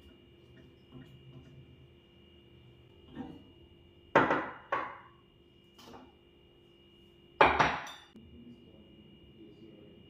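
A spoon scraping and tapping a frying pan, then a few sharp clatters of the pan and ceramic dishes being set down on a kitchen countertop, the loudest about four seconds in and again past seven seconds.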